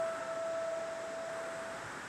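A single piano note held and slowly dying away in a pause of the melody, over a faint hiss.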